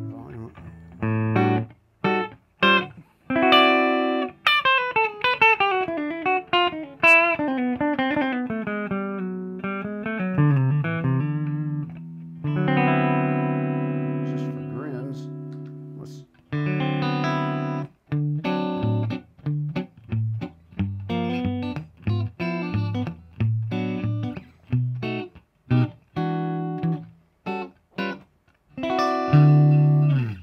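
Electric guitar, a 2014 Gibson Les Paul Traditional Pro II with Floyd Rose, played through an amp with both pickups on and coil-split to a single-coil sound: strummed chords and picked note lines, with a long passage falling in pitch about four seconds in.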